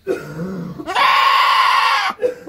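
A Dwarf Nubian doe goat bleating: a short, lower call, then about a second in a loud, harsh, drawn-out scream-like cry. She is protesting her first hoof trim, which is painless but irritates her.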